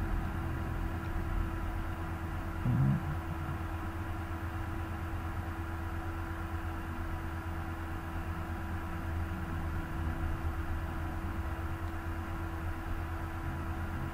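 Steady low background hum with a faint constant tone, the microphone's room noise while nothing is said. A brief low murmur from a voice about three seconds in.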